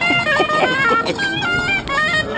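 A snake charmer's wind instrument playing a high melody of short notes that step quickly up and down, with voices over it in the first second.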